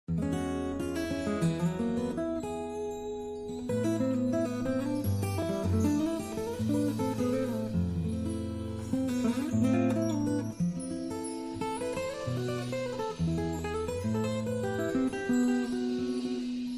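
Bossa nova background music led by an acoustic guitar.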